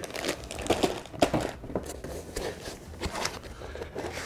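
Plastic wrapping crinkling inside a cloth bag of modular power-supply cables as the bag is squeezed and handled: a run of irregular small crackles that thins out toward the end.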